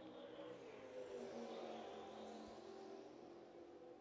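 Faint engine note of open-wheel race cars running at speed, heard from a distance; it swells about a second in, then slowly fades.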